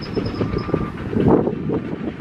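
Steady low rumble of construction machinery working, rising and falling unevenly.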